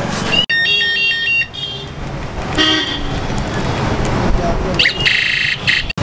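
Street traffic rumble with vehicle horns: a high, broken horn tone for about a second near the start, a short toot about two and a half seconds in, and a rapid high trill near the end.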